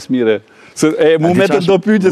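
A man speaking, with a short pause about half a second in: speech only.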